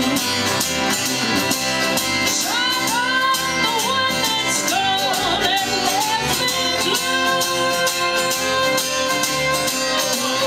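Live bluegrass band playing: upright bass, acoustic guitar and mandolin, with a woman singing into the microphone, sliding between notes and then holding a long note through the second half.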